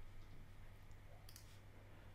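Near silence with a low steady hum and one faint click just past halfway through, as the clone tool is selected.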